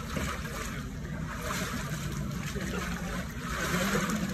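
Water splashing and churning in a cold-water plunge pool as a man ducks fully under and comes back up, with swells of splashing about a second and a half in and again near the end.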